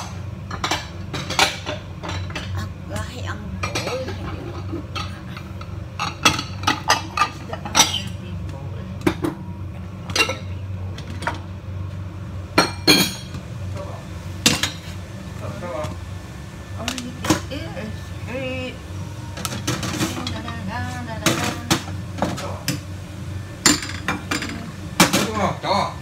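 Popcorn popping inside a lidded stainless saucepan: scattered, irregular sharp pops and clinks against the pot and lid, a few a second, over a steady low hum.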